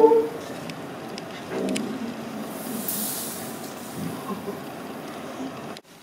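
Classroom room noise with faint murmuring voices, a short voiced sound at the very start, and a soft hiss about three seconds in.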